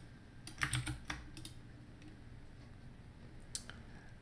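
Computer keyboard keys clicking as a long password is typed: a quick run of keystrokes in the first second and a half, then a single click near the end.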